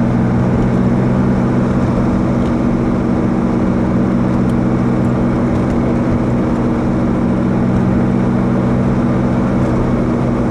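Car engine and road noise inside the cabin while driving: a steady, unchanging drone with a low hum.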